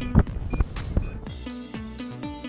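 A short laugh over wind buffeting the microphone in flight. Background music with a steady beat comes in about a second and a half in.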